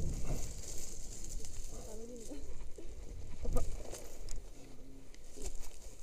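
Wind rumbling on a body-worn camera's microphone as a rope jumper swings on the rope, with faint distant voices and a few sharp clicks, the loudest about three and a half seconds in.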